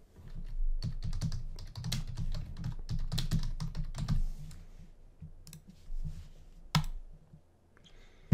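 Typing on a computer keyboard: a quick run of keystrokes for about the first four seconds, then slower, scattered clicks, with one sharper click near the end.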